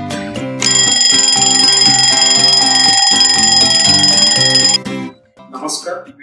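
Alarm-clock bell ringing steadily for about four seconds over a light plucked-string music bed, then cutting off.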